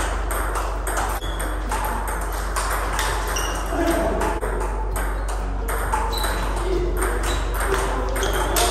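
Table tennis balls struck by paddles and bouncing on the tables, a quick irregular run of sharp clicks from rallies at two tables at once.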